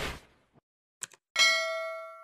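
Subscribe-button animation sound effects: a swoosh dies away, then a mouse click about a second in, followed by a bright notification-bell ding that rings on and fades slowly.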